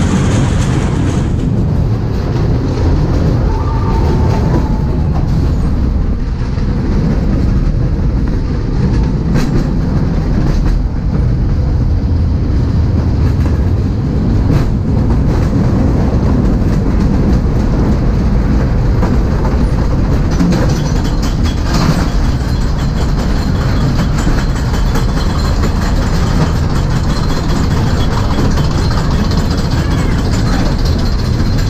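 A dark-ride car rolling along its track with a steady low rumble, with a few sharp clicks along the way.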